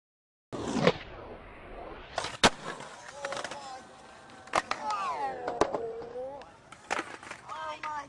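Skateboard on concrete, starting about half a second in: wheels rolling, with several sharp cracks of the board popping and landing. Voices call out in the background, mostly in the second half.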